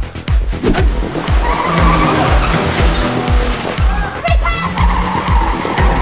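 A car's tyres screeching as it skids in, for about two seconds near the middle, over dramatic score with a steady low drum beat about twice a second.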